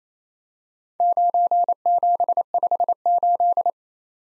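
Computer-generated Morse code tone at 28 words per minute, a single steady-pitch beep keyed into dits and dahs spelling 9, 7, 5, 8 in four quick groups, starting about a second in. It is the repeat in Morse of the four-character combination just spoken.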